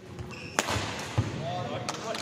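Badminton racket strikes on a shuttlecock during a rally: a sharp crack about half a second in and another near the end, with a duller thud between them.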